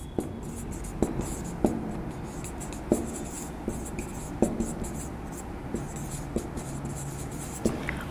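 Marker pen writing on a whiteboard: irregular light taps and strokes of the tip, over a steady low hum.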